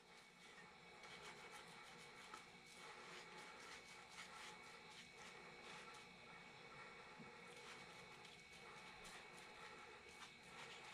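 Near silence: faint room tone with scattered soft ticks and rubs from a foam brush spreading epoxy on thin plywood parts.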